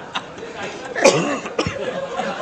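Men laughing and chuckling around a press table amid low murmuring voices, with one loud sharp burst of laughter or a cough about a second in.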